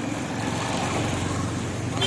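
Street traffic: a motorcycle engine passing close by, followed by a car, over a steady rumble of vehicle noise.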